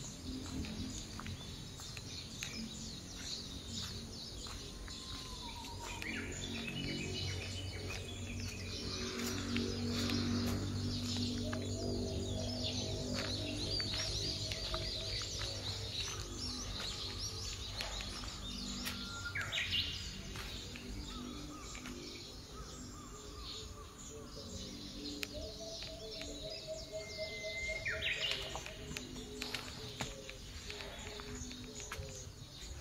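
Birds chirping and calling, with a few short whistled glides, over soft background music of sustained, slowly changing chords.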